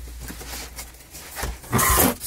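Packing tape tearing as a cardboard shipping box's flaps are pulled open, with a loud rip lasting about half a second near the end, after lighter rustling of cardboard.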